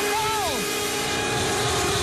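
Hardstyle track in a breakdown without the kick drum: a held synth tone under a noisy wash, with falling pitch sweeps about half a second in.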